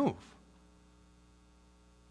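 The end of a spoken word, then near silence with only a faint, steady electrical mains hum.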